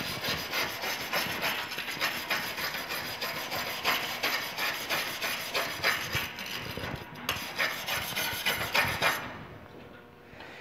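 Stainless steel wire brush scrubbed back and forth over a quarter-inch aluminum plate in quick, repeated strokes, breaking up the surface oxide layer before welding. The brushing stops near the end.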